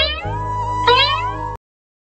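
Background music with a cartoon sound effect: two falling cries about a second apart. The audio cuts off suddenly about one and a half seconds in, leaving silence.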